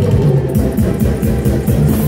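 Live highlife band playing loudly: a prominent bass guitar line over a drum kit's steady beat, with keyboards.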